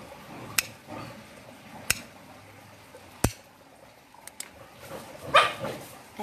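Scissor-type pet nail clippers snipping through a dog's toenails: sharp clicks every second or so, two close together about four seconds in. Near the end the dog lets out a short yelp.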